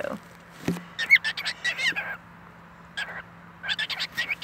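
Cockatiel giving a run of short, soft chirps about a second in and a few more near the end, with a single light knock just before the first chirps.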